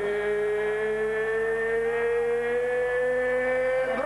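A male boxing ring announcer's voice over the arena PA, holding the last syllable of a fighter's name in one long drawn-out call that rises slowly in pitch and breaks off just before the end.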